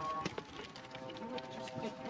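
Sheep-pen ambience: sheep shuffling and scuffing about, with faint distant voices. A long, steady pitched sound starts just under a second in and holds to the end; it could be a held bleat or distant music.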